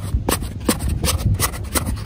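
Rapid, irregular scraping and crackling of sand and a wooden-handled shovel being worked in a narrow hole dug in beach sand, over a low rumble.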